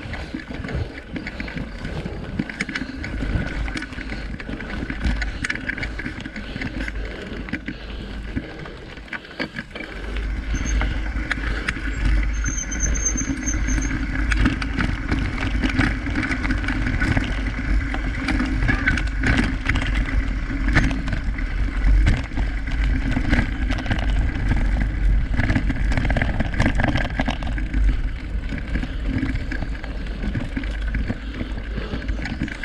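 Mountain bike riding over a bumpy dirt and grass trail, heard from a camera on the handlebars: wind rumbling on the microphone, with continual small rattles and knocks from the bike over the rough ground. It gets louder about ten seconds in.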